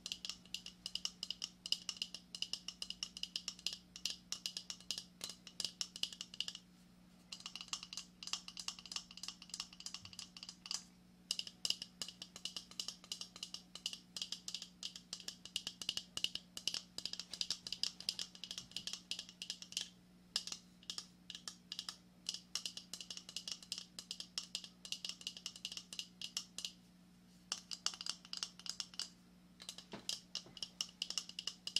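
Fingernails tapping and scratching quickly on a lobster claw's shell, a dense run of light clicks broken by a few short pauses.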